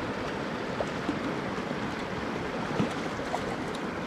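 Steady rush of running stream water, with a few faint splashes from a hooked rainbow trout being played at the surface.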